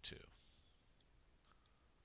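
Near silence with two faint computer mouse clicks, about a second in and again half a second later.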